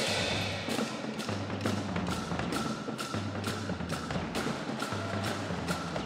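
School percussion band (fanfarra) of drums and cymbals playing a steady beat, about three strikes a second, over low drum tones.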